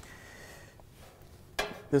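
Sheet-metal dryer heat shield being handled and fitted into place, with a sharp metallic clatter about one and a half seconds in as it knocks against the cabinet.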